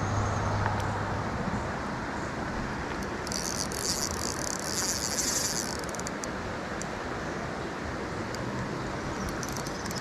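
Steady rush of creek water flowing over a low dam, with a high-pitched buzz lasting a couple of seconds in the middle.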